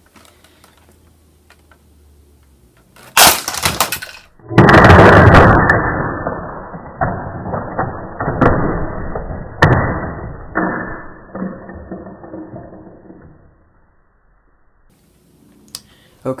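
A Lego Saturn V rocket section crashing into a Lego Hogwarts castle model, a sharp clatter of plastic bricks about three seconds in. Then a slowed-down, deep, drawn-out replay of the crash runs for about ten seconds, with several clattering hits, fading out near the end.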